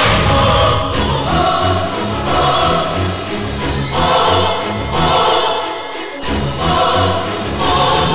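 Background score of choir voices singing sustained chords that swell about once a second, with a brief break about six seconds in.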